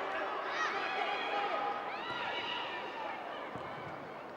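Football match ambience: players shouting on the pitch over a faint crowd murmur, the whole slowly getting quieter.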